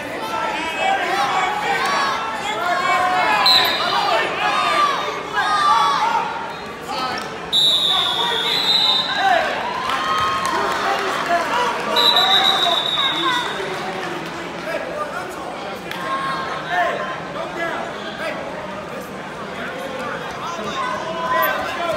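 Coaches and spectators shouting and calling out over one another in a large echoing gym during a wrestling bout. A high, steady signal tone sounds twice, each time for about a second and a half, around the middle of the stretch.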